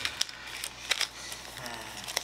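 Foil Pokémon booster packs being shuffled by hand, the wrappers crinkling and rubbing, with a few sharp crackles spaced through it.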